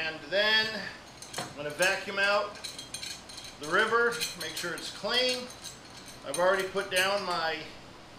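A steel screw clamp being tightened by hand: its threaded screw squeaks in about five drawn-out strokes with a wavering pitch, along with light metallic clinks from the clamp.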